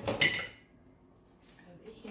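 A short clatter of kitchen utensils knocking together as one is pulled from a utensil crock, ringing briefly in the first half-second. A couple of faint clicks follow near the end.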